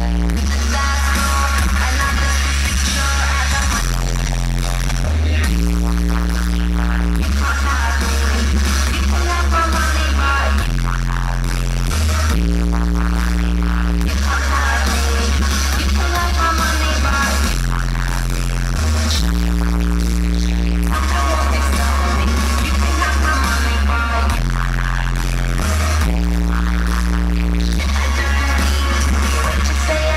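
Loud live concert music over a festival PA, with a deep bass line repeating the same pattern about every seven seconds.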